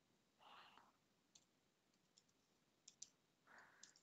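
Near silence, with a few faint computer-keyboard key clicks.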